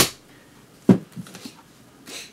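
A sharp knock, then a duller thump about a second later and a few light knocks: hardcover books being put down and picked up on a table.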